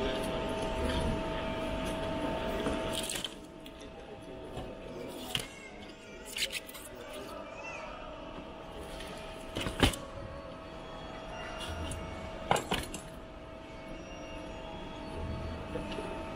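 Airport terminal ambience: a steady hum under a general murmur, which drops noticeably about three seconds in, with a few sharp clicks and knocks scattered through it.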